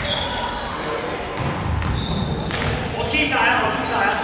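Indoor basketball game: sneakers squeaking briefly on the hardwood court, a ball bouncing, and players calling out, with the sound echoing around a large sports hall.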